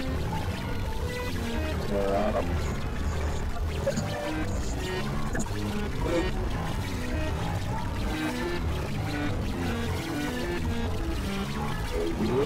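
Experimental electronic synthesizer music from a Novation Supernova II and Korg microKORG XL: a dense mesh of short, stepping synth notes over a steady low bass drone.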